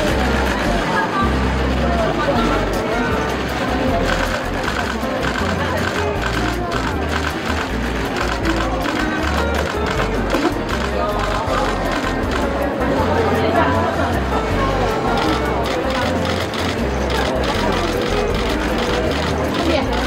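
Background music and crowd chatter, with many quick clicks throughout from press camera shutters firing as she poses.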